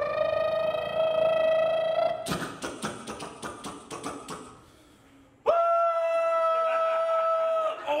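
A man's vocal impression of a cartoon car crash, made into a microphone. A long held wail rises slightly in pitch, then come about two seconds of crackling, clattering mouth noises for the crash. After a short pause there is a second long, steady wail.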